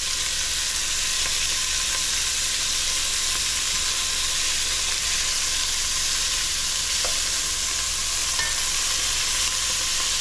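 Squirrel pieces sizzling steadily in hot olive oil in an enameled cast-iron Dutch oven as they brown, an even frying hiss while they are turned over with metal tongs.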